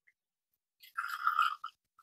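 Lemon juice being poured from a bottle into a tablespoon: a short, wet sputtering sound about a second in, lasting under a second.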